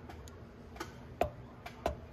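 A few irregular, sharp light clicks, two of them louder, over a faint steady hum.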